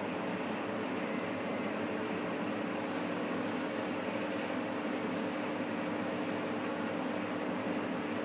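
A steady low hum under an even hiss, unchanging throughout, with a faint high whine joining about a second and a half in.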